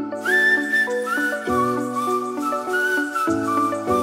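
Background music: a light tune with a whistled melody that slides up into its notes, over chords and a bass that changes every couple of seconds.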